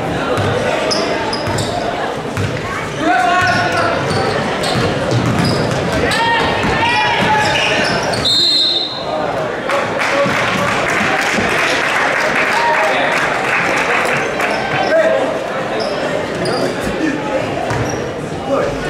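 Basketball game sounds in a gym: a ball dribbling on the hardwood, sneakers squeaking and voices shouting across the court. A little before halfway a referee's whistle blows once, stopping play, and crowd noise follows.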